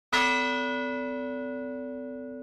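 A single struck bell-like chime note opens the intro music. It starts sharply just after the start and rings on, fading slowly.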